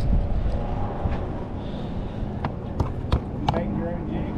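Steady low rumble of outdoor wind noise on the microphone, with faint voices, and a handful of sharp clicks in the second half.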